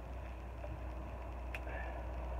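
Shrub branches being handled by hand: a faint rustle of leaves and twigs, with one sharp click or snap about one and a half seconds in, over a steady low rumble.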